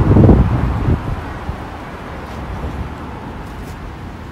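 Wind buffeting the microphone with a loud low rumble for about the first second, then a steady background of street traffic.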